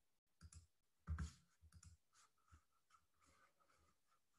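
A few faint clicks and small knocks over near silence, the strongest about a second in.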